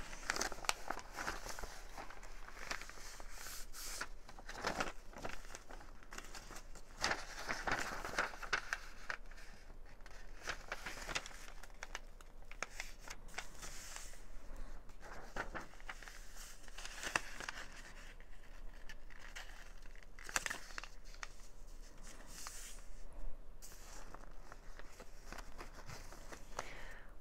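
Paper rustling and crinkling as sheets of printed paper and an envelope are handled, folded and pressed flat by hand, in irregular soft swishes and rubs.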